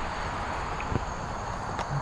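Outdoor background of steady hiss with a faint, steady high insect buzz, likely crickets, and one soft tap about a second in.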